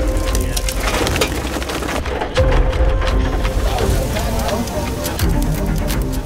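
Background music under the montage.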